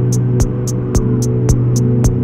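Modular synthesizer (Eurorack) electronic music: a steady low drone under sustained tones, with a pulse of short high ticks about four times a second and a low thump about twice a second.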